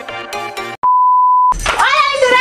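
Electronic intro music cuts off abruptly a little under a second in, followed by a single steady high-pitched electronic beep lasting about two-thirds of a second; then a woman's voice begins.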